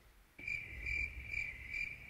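A steady, high-pitched tone with a faint, regular pulse, starting about half a second in after near silence.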